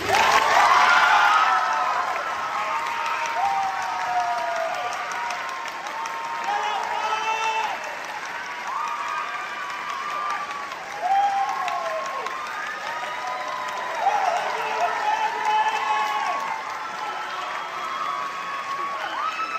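Audience applauding and cheering, with whoops and shouts over the clapping. The applause is loudest at the start and swells again about eleven and fourteen seconds in.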